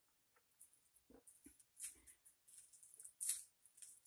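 Faint, scattered soft squishing and light clicks of hands scooping and shaping a sticky rolled-oat patty mixture.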